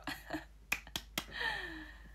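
Three sharp clicks about a quarter second apart, then a short falling vocal sound from a woman.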